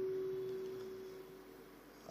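A single steady pure tone, faint and fading slowly away.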